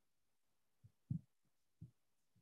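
Near silence broken by three short, faint low thumps, the loudest just after a second in.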